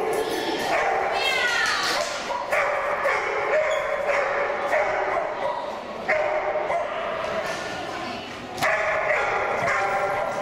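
A dog barking and yipping repeatedly while running an agility course, in loud stretches every few seconds, with a person's voice calling in a large indoor hall.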